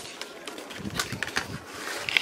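A paperboard product box being handled and opened by hand, with a few light scrapes and taps about halfway through.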